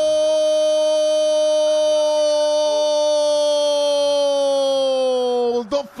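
A male football commentator's long drawn-out goal cry, "Gooool!", held on one steady high note and sliding down in pitch just before it breaks off near the end.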